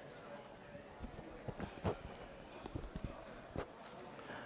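Hooves of a yearling Standardbred filly being led at a walk: a few faint, irregular clops.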